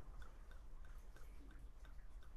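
Benedictine liqueur pouring from its narrow-necked bottle into a metal jigger: faint, quick, regular glugs, about five a second, as air bubbles back into the bottle.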